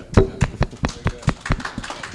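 A quick, irregular run of sharp taps and knocks, about five or six a second, loudest just after the start.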